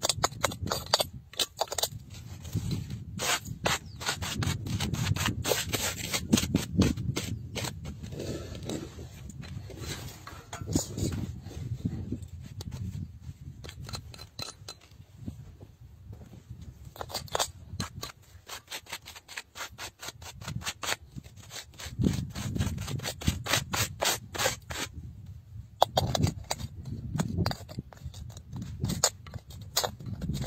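Gloved hands rubbing and scraping at a rough stone block, clearing grit from a carved hollow. There are many small irregular scratches and clicks.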